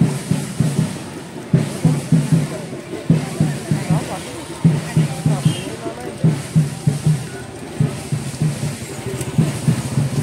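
Drums beating a steady repeating rhythm: groups of three or four low strokes, the groups recurring about every second and a half.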